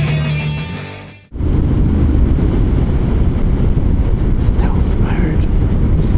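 Rock music fades out over the first second, then cuts suddenly to steady riding noise: a Honda CTX700N's 670cc parallel-twin engine running at road speed, with heavy wind noise on the microphone.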